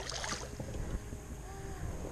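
Low steady wind rumble on the microphone with faint hiss and small handling clicks, after a short noisy burst right at the start.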